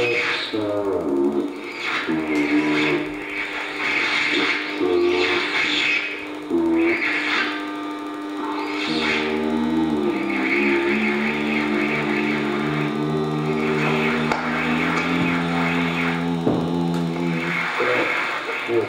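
Live experimental electronic music: layered electronic tones and drones. Short shifting pitched notes in the first half give way, about halfway through, to a steady low drone under held tones.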